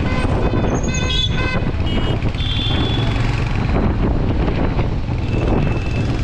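Steady low rumble of a motorcycle riding through city traffic, with short vehicle-horn honks about a second in and again around two to three seconds in.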